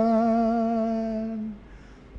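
A lone singer holds one long note at the end of a line of a Bengali devotional song, fading out about a second and a half in, followed by a short pause for breath.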